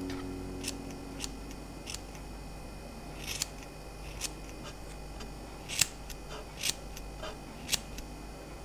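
Small scissors snipping the combed-yarn fur coat of a miniature dog sculpture: about nine short, crisp snips at an irregular pace, the loudest about three-quarters of the way through.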